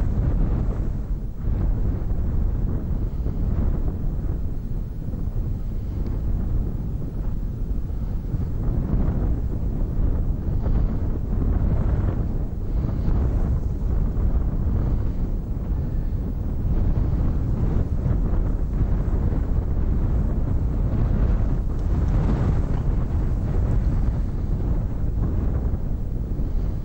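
Wind buffeting the microphone: a low rumble that swells and eases in gusts.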